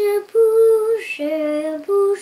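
A young girl singing, holding one long note and then stepping down to a lower held note.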